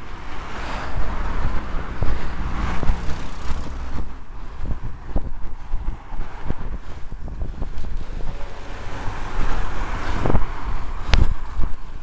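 Wind buffeting the microphone of a camera on a moving bicycle, mixed with the tyre and engine noise of overtaking cars, which swells in the first few seconds and again near the end. Short knocks from the road surface run throughout, and there is one sharp click about a second before the end.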